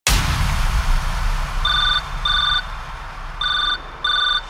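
A sampled electronic telephone ring in a DJ track intro: one double ring of short beeping tones, then the first beep of a second double ring near the end. The ring follows a hissing noise wash with deep bass that starts abruptly and fades out over the first two seconds.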